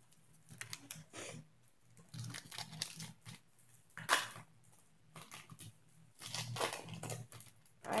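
Plastic trading-card pack wrapper crinkling and tearing in irregular bursts as it is opened and the cards are handled.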